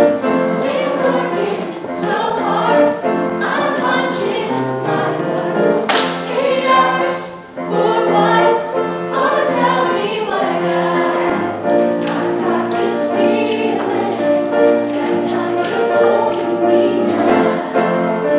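Mixed-voice show choir singing together, the sound dipping briefly about halfway through before the voices come back in.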